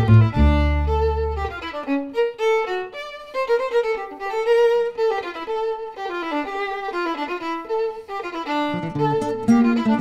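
Swing jazz violin playing a quick melodic line. The low rhythm accompaniment drops out after about a second and a half, leaving the violin nearly alone, and comes back in near the end.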